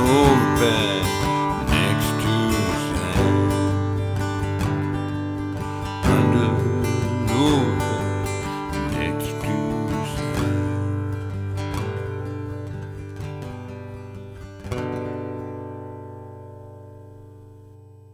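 Acoustic guitar strummed to close the song. A final strum about 15 s in rings out and fades away.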